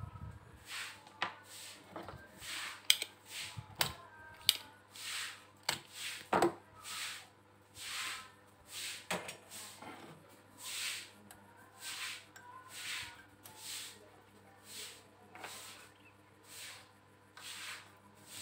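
Close-up handling of a CRT TV circuit board and multimeter probes on a wooden bench: scattered sharp clicks and knocks, most of them in the first seven seconds, over a soft hiss that recurs about once a second.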